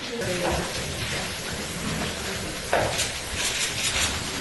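Press-room commotion: a steady hiss of rustling and movement with faint voices, turning suddenly busier about three-quarters of the way through.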